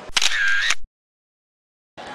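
A short, loud, high-pitched sound lasting under a second that cuts off suddenly into dead silence, the silence of an edit gap.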